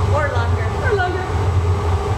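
A steady low machine hum, with a couple of fainter steady tones above it, runs throughout, with brief bits of a person's voice over it about a quarter of a second in and again about a second in.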